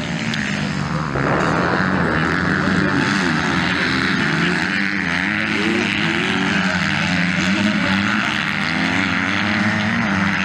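Motocross bike engines revving up and down repeatedly through the corners as the bikes race, with a steady high buzz of other bikes on the track underneath.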